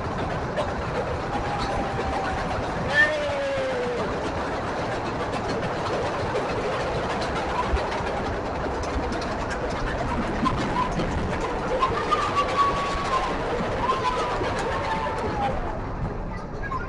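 Amusement-ride car rolling along its track, a steady running noise throughout, with a few faint voices calling out now and then.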